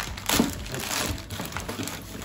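Clear plastic accessory bag crinkling and rustling as it is opened and the parts inside are handled, with a sharp crackle about half a second in.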